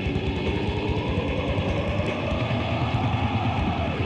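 Death metal demo recording: heavily distorted guitars over rapid, dense drumming.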